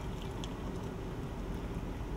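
Hot water poured from a glass beaker into a ceramic mug: a steady pouring stream over constant room noise, with a few faint ticks in the first half second.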